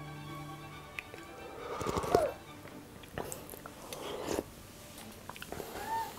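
A cook tasting borscht from a spoon: a few soft sipping and mouth sounds, the clearest about two seconds in, over quiet background music.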